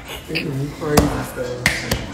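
Low, indistinct talking, with a sharp click about a second in and fainter clicks near the end.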